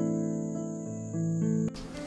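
Intro music of sustained, slowly changing chords with a steady high-pitched tone above them, cutting off abruptly near the end.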